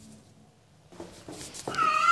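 A cat lets out a loud, drawn-out yowl at a steady pitch, starting near the end after a second of near quiet. A couple of faint knocks come before it.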